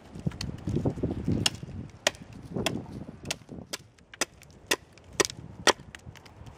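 Side axe chopping down the side of a seasoned birch log, trimming wood away to shape a mallet handle: a run of sharp chops, about two a second.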